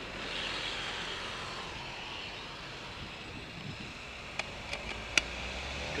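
Steady traffic and road noise heard from a moving bicycle, with three sharp clicks in quick succession near the end.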